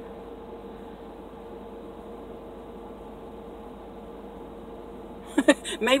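Car engine idling, heard inside the cabin as a steady hum with a faint constant tone. A woman starts speaking near the end.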